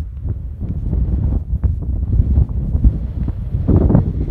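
Wind blowing across the phone's microphone, a low, uneven rumble.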